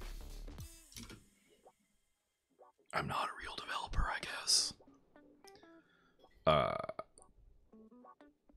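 A man muttering under his breath in two short spurts, one a few seconds in and a briefer one near the end, over faint background music.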